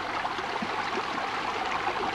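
Shallow stream running, a steady rush of water.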